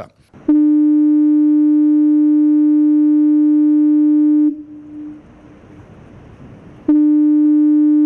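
Electronic harbour fog signal (nautofono) on the pier sounding two long blasts of one steady low tone. The first blast lasts about four seconds and trails off briefly. The second begins about a second before the end, and faint background noise is heard between them.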